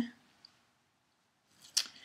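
A pause, then a brief rustle and one sharp snap of linen cross-stitch fabric being lifted and handled near the end.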